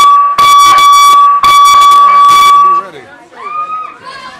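Electronic boxing ring timer sounding a loud, steady, single-pitched tone three times in a row, with short gaps between: the signal to start the round. The tone stops a little under three seconds in.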